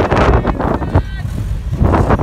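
Vehicle engines working under load as a Toyota Hilux tows a bogged Subaru Outback out of mud on a recovery strap, with heavy wind rumble on the microphone.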